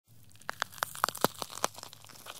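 A run of sharp, irregular crackling clicks, about ten in two seconds, over a faint low hum.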